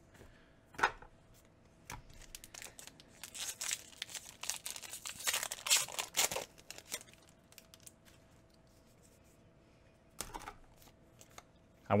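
A Magic: The Gathering booster pack's foil wrapper being torn open and crinkled: a click just under a second in, then a few seconds of crackling and tearing, with lighter rustling near the end.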